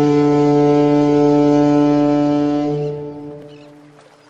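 A single long, low horn blast: one steady note with strong overtones that stops about three seconds in and dies away over the next second.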